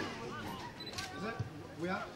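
Distant shouting voices of spectators and players, with two sharp clicks: one at the start and one about a second in.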